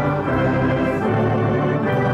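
Electronic church organ playing sustained chords over bass notes, the harmony changing every second or so.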